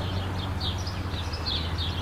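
Small birds chirping, a quick series of short high chirps, over a steady low hum.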